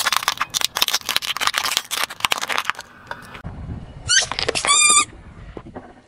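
Dry lasagna sheets cracking and crunching under a car tyre in a rapid run of sharp snaps lasting about three seconds. About four seconds in comes a high squeak that rises and then wavers for just under a second.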